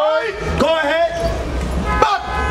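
A man's voice speaking through a handheld microphone and amplifier, the words not made out, over a low steady rumble.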